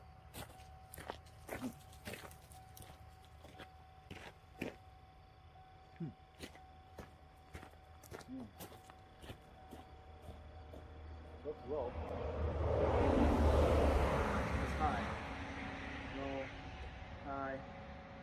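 Scattered light clicks and knocks over a faint steady tone, then a car passing by on the road: a broad rush that swells about twelve seconds in, peaks and fades over a few seconds.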